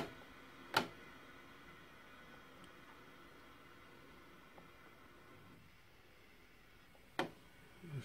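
Quiet room tone broken by sharp clicks: two near the start and one near the end.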